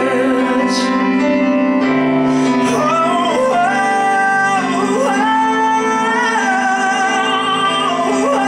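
A man singing a slow ballad live over piano chords, with long held notes that come in strongly about three seconds in.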